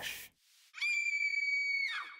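A single high-pitched held tone, like a squeal, starting about three-quarters of a second in and lasting about a second, dipping slightly in pitch as it ends.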